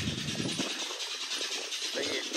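Wind blowing over a phone's microphone: a low rumble that drops away about half a second in, over a steady hiss.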